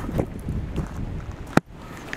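Wind buffeting the microphone, a low rumble, with one sharp click about a second and a half in.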